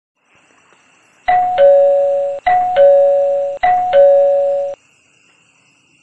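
Two-tone doorbell chime ringing ding-dong three times in a row, each time a higher note falling to a lower one and fading.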